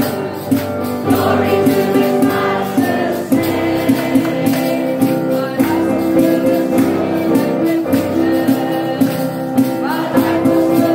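A group of voices singing a gospel chorus with instrumental accompaniment over a steady beat of about two strokes a second.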